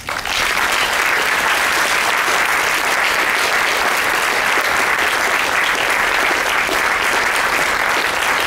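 Audience breaking into loud, steady applause at the end of a talk.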